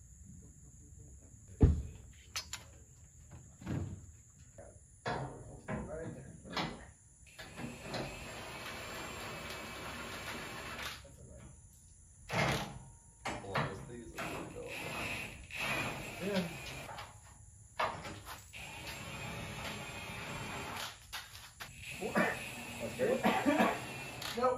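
Metal suspension and frame parts being handled, a run of sharp clanks and knocks, the loudest about a second and a half in, while a crossmember is fitted to a truck frame. Low voices run under the clatter.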